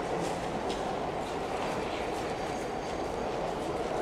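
Steady rumbling noise of a train running in the underground station tunnel, with a few faint clicks.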